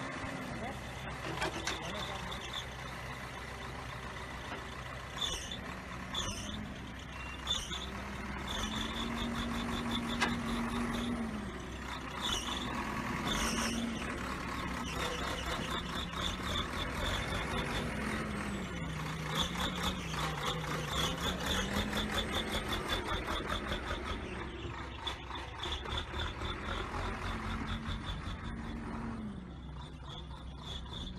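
Engine of an earthmoving machine working on land leveling, its pitch repeatedly rising and falling as the load changes. A high repeated beeping and a fast clattering run through it.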